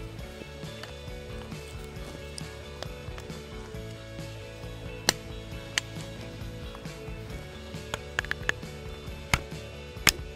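Plastic electric-fence insulator being fitted onto a steel T-post: a few sharp clicks and snaps, with a quick cluster of them about eight seconds in, over steady background music.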